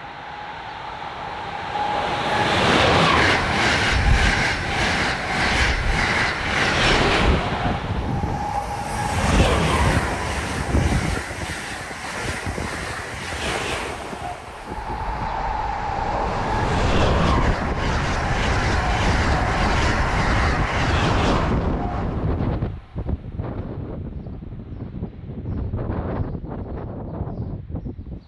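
Amtrak Acela high-speed electric trainset passing at close to 100 mph: a loud rush of wheel and air noise with rapid clicking of wheels over the rails, and a high thin whine in the middle of the pass. The rush dies down about 22 seconds in.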